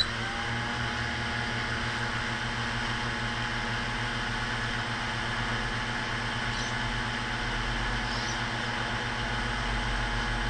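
The JJRC X1 quadcopter's four brushless motors, just armed, spin propellers at idle on the ground: a steady whine with several tones at once. It comes up to speed at the very start and then holds steady.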